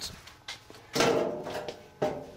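Knocks and clatter from a microwave oven's removed outer cabinet and metal casing being handled, three clunks in all. The loudest comes about a second in and rings on briefly.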